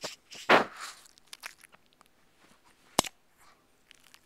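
A shih tzu mouthing and licking right against the camera's microphone: a scraping rub about half a second in, small crackles, and a sharp click about three seconds in.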